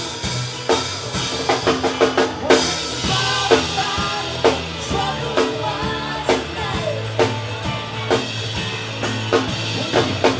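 Live rock band playing, with the drum kit prominent: a steady beat of kick and snare under electric guitars.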